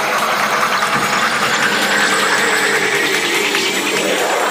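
Electronic sound design in a dark psytrance intro: a steady, noisy, machine-like drone with slow tones gliding through it, one drifting down and another rising in the middle of the range.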